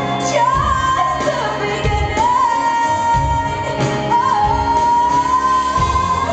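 Female pop singer singing live into a microphone with instrumental accompaniment: a slow line of three long held notes, each starting with a small upward bend.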